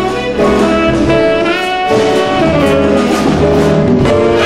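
Live small-group jazz: a saxophone plays a fast run of notes over an upright bass.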